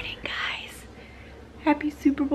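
A woman whispering and speaking softly, keeping her voice low; her voiced words start near the end.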